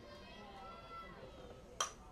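Faint spectator chatter, then near the end a single sharp, ringing metallic ping of a softball bat hitting the ball.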